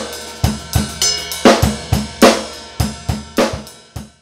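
Drum kit playing a groove: a Mapex Black Panther 12x7 maple/cherry snare with kick drum and cymbals. The groove cuts off suddenly near the end.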